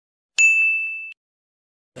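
A single bell-like ding sound effect that rings on one clear high note, fades, and cuts off after under a second.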